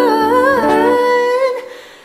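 Male voice singing a wordless, wavering run over sustained backing chords, with no lyrics; the voice and chords fade away about one and a half seconds in.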